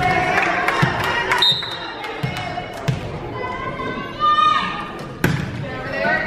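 Volleyball rally: a volleyball being struck several times by players' arms and hands, each a sharp smack, the loudest about five seconds in. Players and spectators call and shout throughout.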